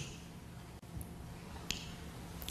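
A pause in speech through a lecture microphone: faint steady room tone with two small, sharp clicks, one about a second in and another a little later.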